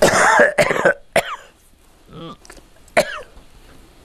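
A man coughing into his hand: one loud, rough cough right at the start, followed by a few short throat-clearing sounds about one, two and three seconds in.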